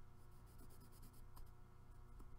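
Faint scratching of a brown Stabilo pencil shading along the edge of a paper card, over a steady low hum.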